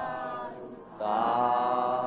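Buddhist chanting in Pali: a voice drawing out long, steady held tones. One tone fades about half a second in, and a louder one begins about a second in.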